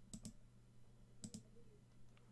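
Faint computer mouse clicks: two quick double clicks about a second apart, over a low steady hum.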